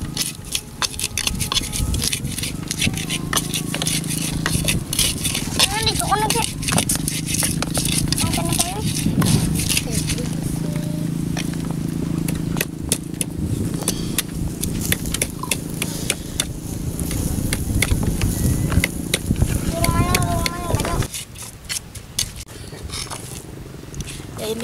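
Spices being ground smooth with a pestle (ulekan) in a cobek mortar: a rapid, irregular run of knocks and scrapes. A child's voice breaks in briefly now and then, and a steady low hum underneath cuts off near the end.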